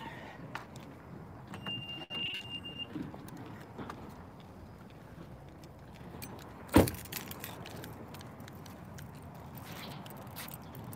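Rustling, handling noises and key jingling as a camera is taken out of a car, with a steady high electronic beep lasting about a second, about two seconds in. Near seven seconds in, a car door slams shut with one loud thud.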